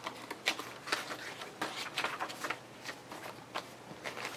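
Pages of a handmade paper journal being turned and handled by hand: a string of irregular, light paper rustles and soft taps.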